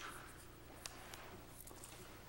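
Faint rustle of pen and papers on a desk over a steady low electrical hum, with two small clicks near the middle.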